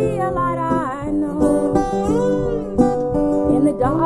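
A resonator guitar and a steel-string acoustic guitar playing together, with a woman singing long, held notes that glide between pitches.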